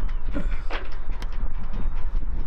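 Wind buffeting the microphone: a steady low rumble, with a few faint clicks.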